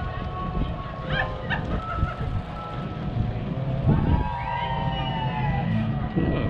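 Wind rumbling on the microphone, with faint sustained tones that waver and glide, most noticeable in the second half.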